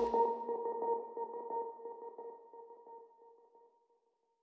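The closing held synth note of an electronic pop song, a lone steady tone fading out to silence about three seconds in.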